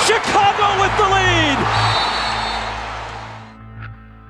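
Basketball arena crowd cheering, with an excited voice shouting over it, on top of a background music bed; the crowd noise swells up suddenly and then dies away near the end.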